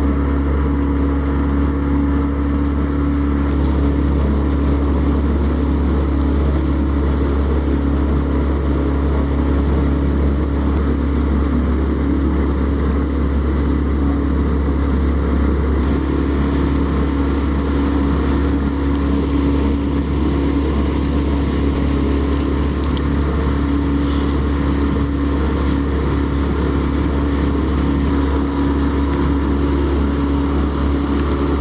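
A sailboat's engine running steadily while under way, a constant drone with a steady hum.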